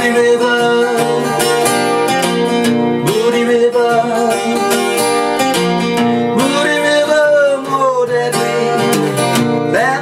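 Acoustic guitar strummed in a steady rhythm, with a melody line that slides up and down in pitch over the chords.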